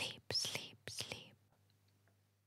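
A woman speaking a few short words very softly, close to a whisper, then near silence with a faint low hum.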